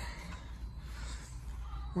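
Quiet background with a low steady rumble and no distinct event.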